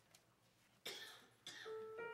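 Someone in the room coughs twice about a second in, then a single held note on an electronic keyboard starts near the end as the accompaniment begins.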